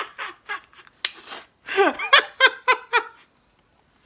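A man laughing hard in a string of short, quick bursts, falling silent a little after three seconds in.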